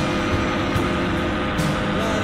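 Background music over a steady rush of riding noise.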